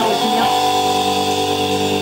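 Live band's electric guitars holding one sustained chord that rings steadily with no drums, after a short change of notes at the start; the chord stops at the end.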